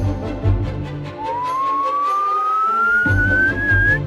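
Background music with a low beat, over which a whistled sound effect glides steadily upward in pitch from about a second in until the end, in the manner of a slide whistle.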